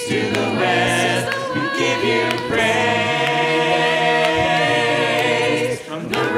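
A congregation singing a hymn a cappella, with no instruments, led by amplified song leaders. The many voices move through the melody and then hold one long chord in the second half.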